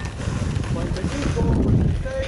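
Voices of people calling out and talking, at a distance, over a gusty low rumble of wind on the microphone.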